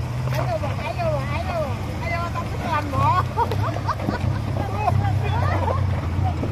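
Small off-road 4x4 engine running low and steady as the vehicles crawl over a rough dirt track, with people's voices calling and chattering over it.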